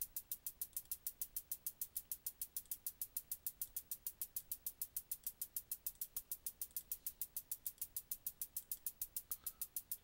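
Soloed synthesised hi-hat pattern from a Subtractor synth, played by a Matrix step sequencer and looping: an even run of about seven short, tinny ticks a second, every hit alike. It sounds static, with no modulation on it yet.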